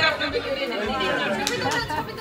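Several people talking over one another in a large hall: indistinct chatter with no single clear voice.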